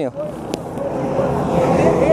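A vehicle engine running at a steady pitch, coming up clearer about a second in, with a light click shortly before and people talking.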